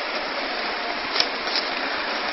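Steady background hiss, with one faint click about a second in as the cardboard processor box is handled.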